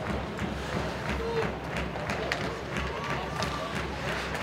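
Ice hockey played live in an arena: skates scraping the ice and sharp clacks of sticks and puck over a steady murmur of crowd voices.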